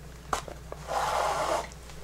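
Hand-sewing leather: a needle clicks as it goes in, then waxed thread is drawn through the layers of deer hide with a soft rasp of just under a second.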